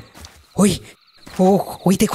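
Crickets chirping in a fast, even pulse, with two short bursts of a person's voice about half a second and a second and a half in.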